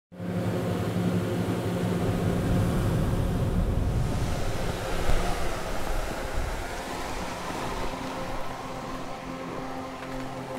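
Snowmaking gun spraying: a steady rushing noise with a low hum underneath, easing off somewhat over the last few seconds.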